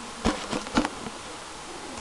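A few sharp clicks of laptop keyboard keys in the first second, over steady background noise.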